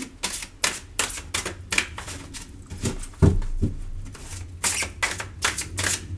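A deck of tarot cards being shuffled by hand, overhand style: a quick run of soft card slaps and flicks, about three a second.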